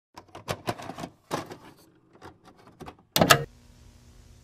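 Intro sound effect of sharp, irregular clicks, ending in a louder burst a little after three seconds.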